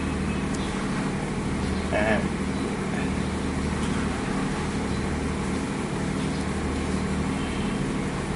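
Steady low machine hum of room equipment, unchanging throughout, with a brief voice sound about two seconds in.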